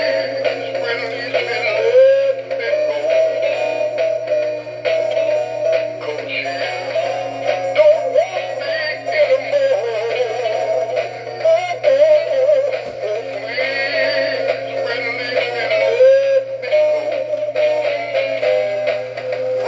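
Tommy Trout animatronic singing fish playing one of its Rocky-board rainbow trout songs through its small built-in speaker: a recorded voice singing over backing music, thin with little bass.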